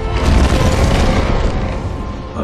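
A loud, booming fire blast from a robot Tyrannosaurus, as created for a film soundtrack. It swells in the first half second and then slowly dies away, with orchestral score underneath.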